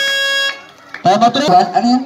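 Basketball game buzzer sounding a steady, loud electronic tone that cuts off about half a second in, followed by voices on the court.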